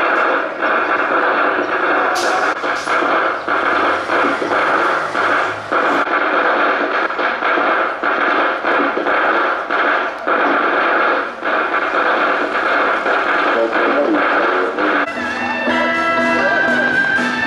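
Harsh, narrow-band sound from a loudspeaker, music and voice mixed together, with its level dipping rapidly. Near the end it gives way to clearer music.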